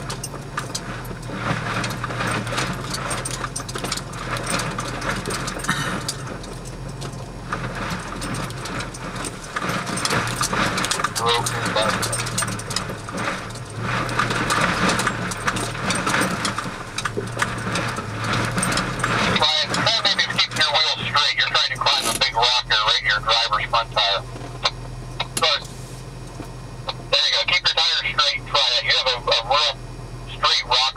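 Cab of an off-road vehicle crawling over a rocky trail: a low, steady engine drone with frequent knocks and rattles as the tyres go over rock. About two-thirds of the way through the drone falls back and indistinct voices take over.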